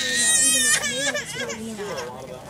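A young child crying in a loud, wavering voice, loudest in the first second.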